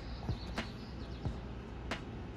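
Low, steady background ambience with two faint clicks, one about half a second in and one near the end.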